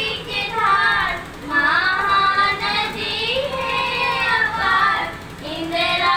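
Schoolgirls singing a song into microphones, in long held and gliding notes.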